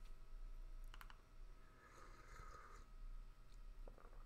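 Near silence with a faint steady hum, broken by a few faint computer clicks about a second in and again near the end, as the lecture slide is advanced.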